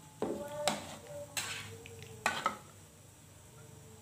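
A metal spatula and ladle knocking and scraping against an aluminium wok while stirring a coconut-milk curry: about five sharp clinks in the first two and a half seconds, some ringing briefly, then quiet.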